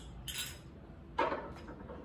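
Glass votive and thin metal frame of a geometric candle holder clinking as it is handled and set back down on a table, the loudest clink a little after a second in.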